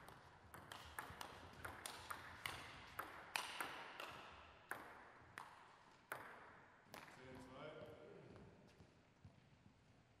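Table tennis rally: the ball clicking sharply off rackets and table in a quick alternating rhythm for about six seconds. A brief voice call follows once the point ends.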